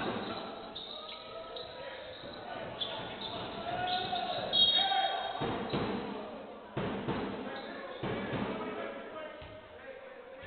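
Basketball being dribbled on a hardwood court, with a few sharp bounces in the second half, in a large echoing gym. Players' voices call out, and a brief high squeak comes about four and a half seconds in.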